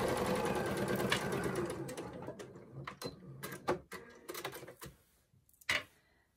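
Domestic sewing machine stitching a quilting line through layered quilted fabric. It runs steadily, then slows and stops about two seconds in, followed by scattered light clicks.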